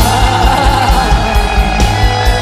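Live industrial gothic metal band playing: distorted electric guitars, keyboards and drums with a steady kick drum about four beats a second, under a woman's sung vocal holding a long note.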